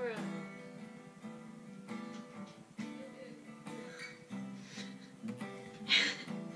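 Acoustic guitar strummed loosely, a few chords struck about once a second and left to ring between strums.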